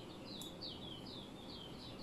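A small bird chirping faintly in the background: a quick, even series of short, high chirps, each dropping in pitch, about four a second.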